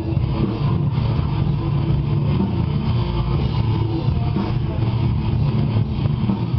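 Metal band playing live: a loud, low, distorted guitar and bass riff with drums, dense and muddy in the low end.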